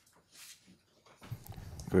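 A short pause in a panel discussion: a faint breath or rustle about half a second in, then a voice murmuring and building into speech near the end.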